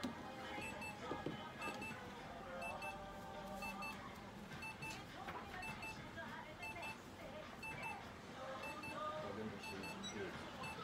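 An electronic device beeping: short high double beeps repeating about once a second, like an alarm clock.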